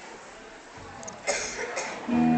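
A person coughing, two short coughs in quick succession a little past halfway, over faint room noise.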